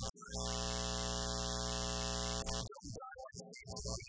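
A steady electrical buzz with hiss, switching on abruptly just after the start and cutting off suddenly about two and a half seconds later.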